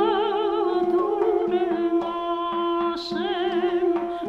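Armenian folk music from a duduk trio: a duduk drone holds one steady low note while an ornamented melody line with wide vibrato wavers above it, easing briefly about three seconds in.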